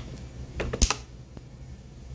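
Handling of the recording phone close to its microphone: a sharp tap at the start, then a quick run of about five clicks and knocks, the loudest just under a second in.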